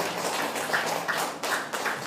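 Congregation applauding: a dense, irregular patter of many handclaps.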